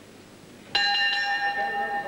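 Wrestling ring bell struck once about three-quarters of a second in, signalling the end of the round. It rings on with several steady tones.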